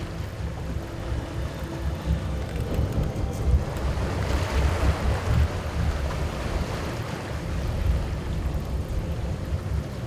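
Wind rumbling on the microphone over the wash of the open sea around a boat. The hiss of the water swells in the middle.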